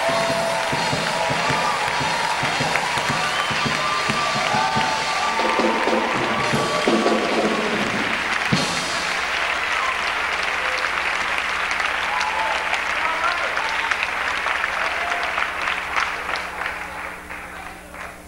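Congregation clapping hands in sustained applause, thinning out and dying down over the last couple of seconds.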